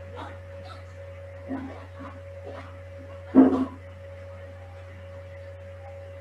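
Steady low electrical hum with a faint constant tone above it, broken by a few short, sharp sounds. The loudest comes about three and a half seconds in, with a smaller one near the middle.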